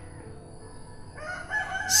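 A rooster crowing: one long, level-pitched call that begins a little past the first second.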